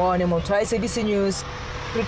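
A person speaking over steady roadside traffic noise.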